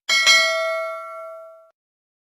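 Notification-bell 'ding' sound effect for a subscribe animation's bell icon: a bright chime struck twice in quick succession. It rings with several tones at once and fades, cutting off after about a second and a half.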